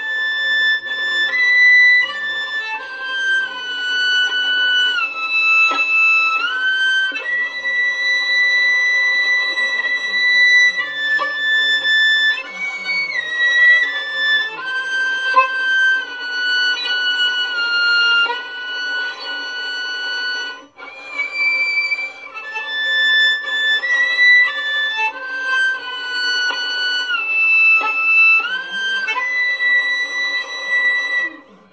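Solo violin playing a slow melody in false (artificial) harmonics: high, thin, whistly sustained notes, each made by stopping the string with the first finger while the fourth finger lightly touches it. Some notes slide up or down into the next, and there is a short break about 21 seconds in.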